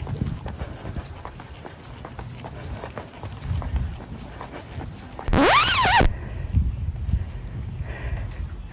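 A large bird gives one loud, harsh cry about five seconds in, lasting under a second, its pitch rising and then falling. Under it, running footsteps thud steadily.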